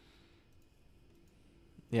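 A pause in a conversation: faint room tone with a few faint clicks, then a man says "yeah" at the very end.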